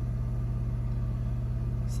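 A steady low hum, even and unchanging, with a fine rapid flutter in its lowest part.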